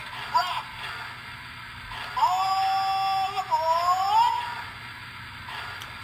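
Recorded conductor's announcement from the Polar Express film, played by the American Flyer FlyerChief Polar Express locomotive's onboard sound system. About two seconds in comes one long drawn-out call that rises in pitch at its end.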